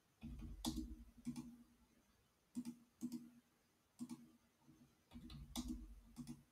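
Computer mouse clicking: about eight faint, sharp clicks, singly and in close pairs, as lines are placed in a CAD drawing. A faint low rumble sits under the clicks in the first and last second.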